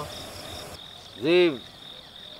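Crickets chirping steadily at night, a continuous high trill. A man says one short word about halfway through.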